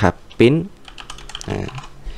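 Typing on a computer keyboard: a quick, irregular run of key clicks as a short line of code is typed.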